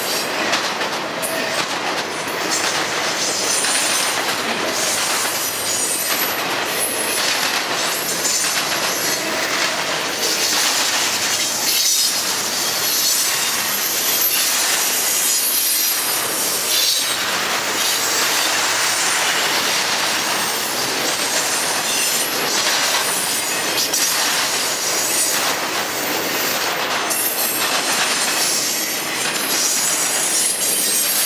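Intermodal freight train rolling past at speed: a steady rush and rattle of steel wheels on rail from double-stack container well cars and trailer-carrying flatcars, with thin high wheel squeal at times.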